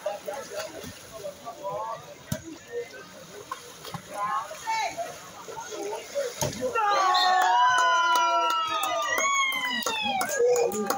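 Water sloshing and splashing as players move through a shallow pool during a biribol (pool volleyball) rally, with a few sharp knocks of the ball being struck. About seven seconds in, several men break into loud, long shouts, cheering a won point.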